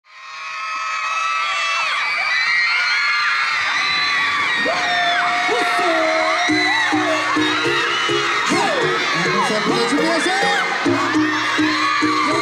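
A large concert crowd screaming and cheering in high-pitched shrieks, fading in over the first second. About six and a half seconds in, a song's backing track starts under the screams with a pulsing bass beat.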